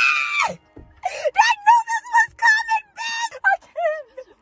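A woman's excited scream, gliding sharply up into a held high note that breaks off about half a second in. It is followed by quick, high-pitched excited vocal sounds.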